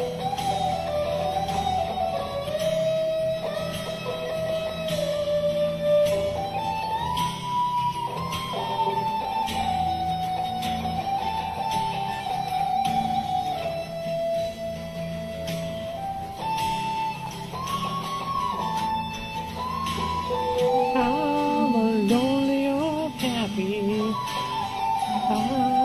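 Guitar music with no words: a melody of held notes that slide from one pitch to the next over a steady low backing. Near the end a second, wavering line joins lower down.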